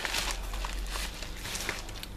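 Rustling and crinkling of a parcel's packaging as it is handled, with scattered small clicks, busiest in the first half second.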